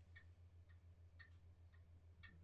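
Faint, even ticking of a clock in the room, about two ticks a second, over a low steady hum.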